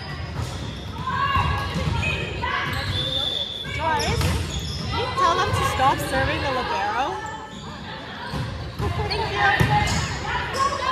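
Players' voices calling and shouting across a gymnasium, with a ball bouncing on the wooden floor several times in the large, echoing hall.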